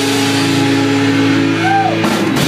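Loud, distorted electric guitar holding a chord that rings on through the amp while the drums drop out for a moment, with a note that swoops up and back down near the end.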